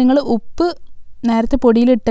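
A woman speaking, with a short pause about a second in.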